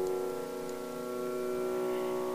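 Background music: a single chord held steady on a keyboard.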